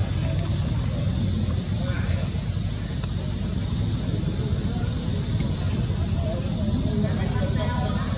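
A steady low rumble with faint human voices in the background and a few light clicks.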